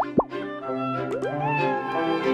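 A quick cartoon-style pop sound effect, a steep rising bloop, right at the start, then soft background music with long held notes, one of them sliding up and levelling off about a second and a half in.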